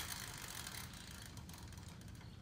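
Faint, fast clicking of the plastic spinner wheel of The Game of Life board game turning, its pegs ticking against the pointer.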